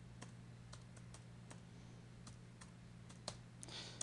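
Faint, irregular keystrokes on a computer keyboard, about three clicks a second, as an email address is typed in, over a steady low electrical hum.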